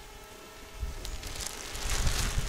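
Wind rumbling and buffeting on the microphone, building up from about a second in.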